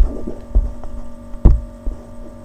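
Steady electrical hum from the recording setup, with a few short low thumps, the loudest about one and a half seconds in.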